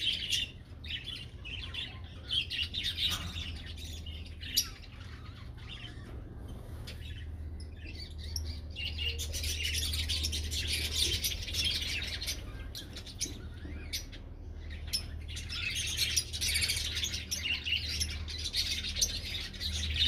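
Birds chirping and calling continuously, busier and louder in the second half, over a low steady hum.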